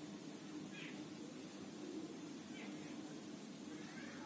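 Faint steady low hum with a few brief, high animal cries standing out over it.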